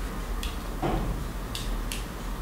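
A caliper being fitted onto a rifle cartridge to measure its overall length: a few small, sharp clicks as the jaws slide and close on the cartridge, with a softer knock just under a second in.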